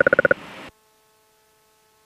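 A rapidly pulsing electronic beep, about fifteen pulses a second, stops about a third of a second in. A short hiss follows, then the sound drops abruptly to near silence with only a faint steady hum.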